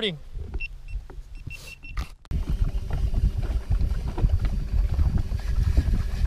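A GoPro camera gives a few short, high beeps in answer to the voice command to stop recording. About two seconds in, the sound cuts to a steady low rumble of wind and water on another camera's microphone, with a faint steady hum under it.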